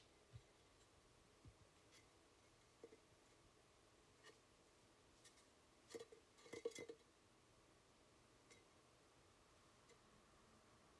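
Near silence, with a few faint clicks and taps as a ceramic cat figurine is handled and turned over in the hands. The clicks come in a brief cluster about six to seven seconds in.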